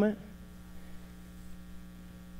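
Steady electrical mains hum, a low buzzing tone with many even overtones, with the last of a man's word dying away at the very start.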